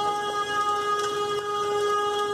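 A single steady pitched tone with overtones, held without any change in pitch.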